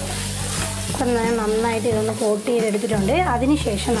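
Masala-marinated chicken pieces sizzling as they fry in oil in a nonstick pan, stirred and scraped with a wooden spatula.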